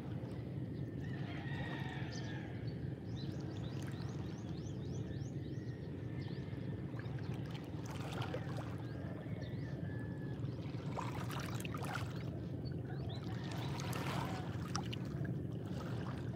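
Small sea waves lapping and washing over rounded shore stones, with a few brief surges of splashing over a steady low rumble.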